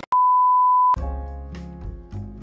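A single steady electronic beep, just under a second long, dropped in at the edit. It is followed by background music with plucked string notes.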